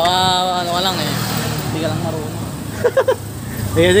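Mostly voices: a long drawn-out call in the first second and a few short vocal sounds about three seconds in. Underneath runs a steady low engine hum.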